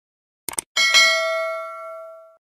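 Subscribe-button sound effect: two quick clicks about half a second in, then a single bell ding that rings on and slowly fades.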